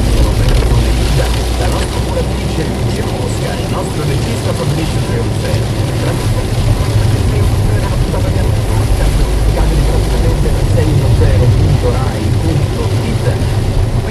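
Car driving on a wet road, heard from inside the cabin: a steady low engine and road drone with tyre hiss from the wet surface.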